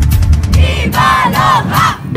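A group of voices shouting together in a few short rising-and-falling calls, over steady drumming.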